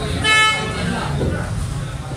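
A short, high-pitched horn toot about a quarter of a second in, lasting under half a second, over steady background voices.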